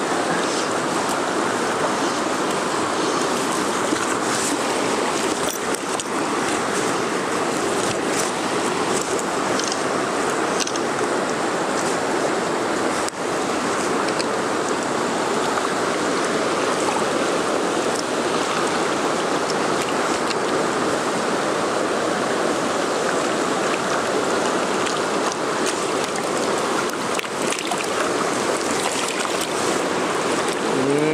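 A rocky mountain stream rushing over stones, a steady, unbroken sound of running water close by.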